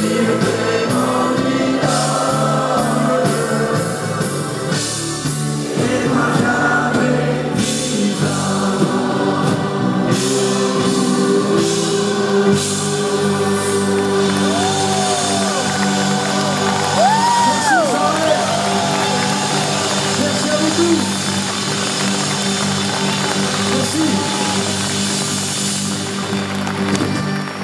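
Live concert music: a folk-rock band with electric guitar and accordion playing while a large choir sings.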